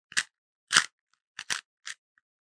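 Rubik's Cube being twisted by hand: five short plastic clacks as its layers are turned in quick succession, a move sequence for swapping the yellow edges.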